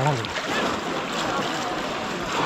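Pond water sloshing and splashing around people wading through it, a steady noisy rush, with a man's voice trailing off just at the start.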